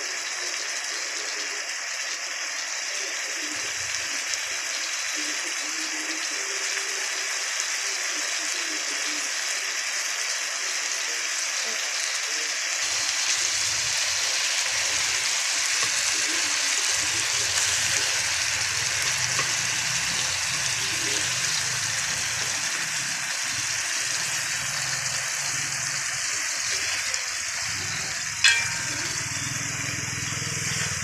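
Tomatoes and onions sizzling as they sauté in a hot pan, a steady frying hiss that carries on after raw chicken pieces are laid in. A single sharp click comes near the end.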